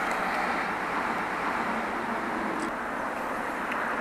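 Steady, even rushing noise with no words: the outdoor background of the recording, the same noise that runs under the voice before and after.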